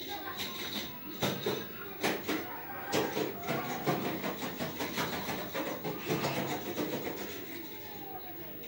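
Close, irregular rubbing and scraping noises right at the phone's microphone, typical of the phone being handled and brushing against clothing.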